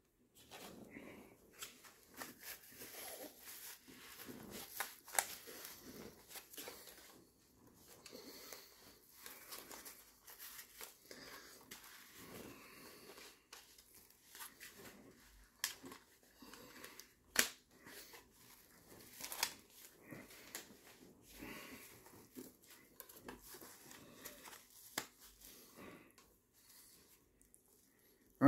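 Faint rustling and scraping as a hockey goalie mask is pulled on over the head and its straps and padding are adjusted, with a few sharp clicks and knocks from the mask and cage, the sharpest about two-thirds of the way through.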